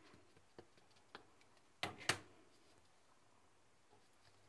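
Small handling sounds of a wood-mounted rubber stamp and a plastic stamp-ink pad: a few faint taps, then two sharper clicks about two seconds in, a fraction of a second apart.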